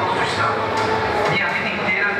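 A man's voice from a campaign video played over loudspeakers in a reverberant hall, over a steady background noise.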